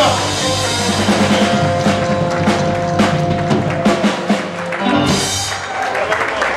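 Live rockabilly band playing the closing chord of a song: held notes with a run of drum and cymbal hits over them, the band stopping together about five seconds in.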